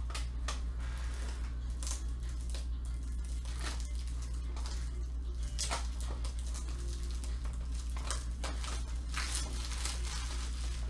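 Steady low hum under scattered crinkling, rustling and clicking handling noises.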